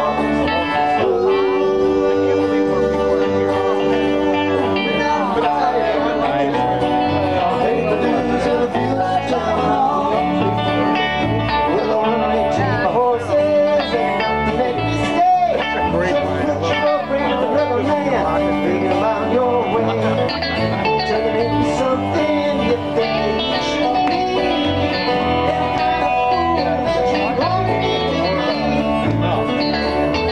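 A small live band playing a song on electric bass and two acoustic guitars, with the guitars strummed and picked over a steady bass line.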